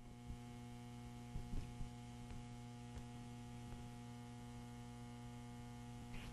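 Faint, steady electrical mains hum that comes in abruptly at the start, with a few soft knocks about a second and a half in.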